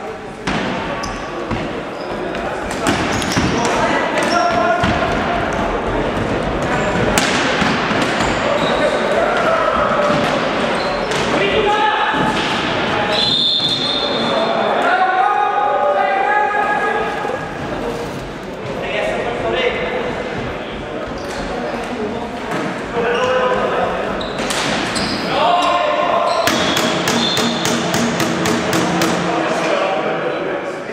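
Floorball game in a sports hall: indistinct shouting of players over repeated sharp knocks of plastic sticks and ball on the floor and boards, echoing in the hall. A quick run of sharp clicks comes near the end.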